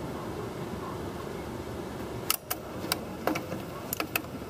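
A GM windshield wiper motor runs with a steady hum. About two seconds in, the washer pump mounted on it starts clicking in quick, irregular ticks as its cam-driven mechanism works: the freshly repaired pump is working.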